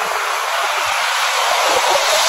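Shallow sea surf washing in over sand: a steady rush of water noise that starts suddenly.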